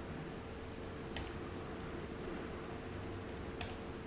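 Sparse clicking at a computer keyboard, with two sharper clicks about a second in and near the end, over a faint steady hum.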